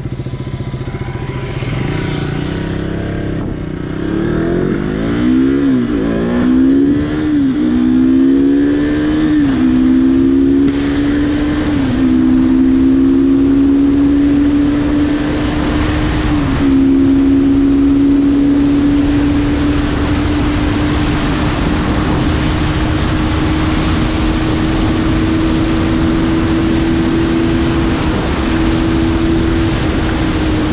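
Motorcycle accelerating up through the gears. The engine note climbs and drops back at each of about five upshifts in the first half, then holds an almost steady note while cruising.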